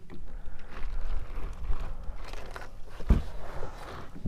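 Scuffing, rustling and small knocks of a large fish being handled in a landing net inside a plastic kayak, with one dull thump about three seconds in.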